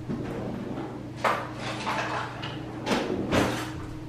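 Off-camera rummaging while a lighter is fetched: two bouts of short scraping and knocking noises, one about a second in and a longer one around three seconds in, over a steady low hum.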